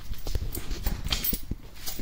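A series of irregular light knocks and clicks.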